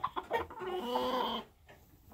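Red junglefowl rooster giving a few short clucks, then one held call of under a second that ends about one and a half seconds in.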